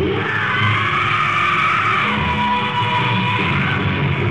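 Hard rock band playing live, heard through a lo-fi audience recording that sounds muffled, with a long high held note that drops in pitch about halfway through.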